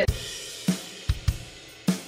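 A programmed drum-kit track (Logic Pro's SoCal drummer kit) playing on its own with a swing feel. A cymbal wash opens it and fades over about a second, over a handful of separate kick and snare hits.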